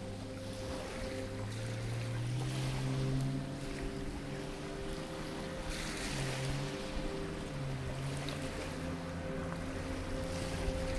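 Soft background music of slow, held low notes that change every second or two, over a steady wash of waves and wind.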